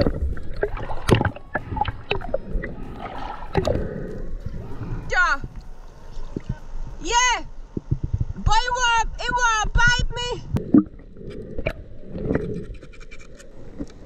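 Water sloshing and splashing around a snorkeller, with scattered clicks and knocks. About five to ten seconds in come several short, high, wavering vocal cries from a woman.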